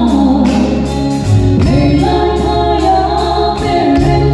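Live gospel song performed by a small church band: several voices singing over bass guitar, keyboard and drums, with a steady cymbal beat.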